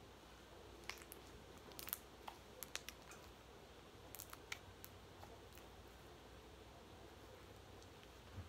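Near silence with a scatter of small, sharp clicks and taps in the first half, like fingers or nails handling small objects at a table.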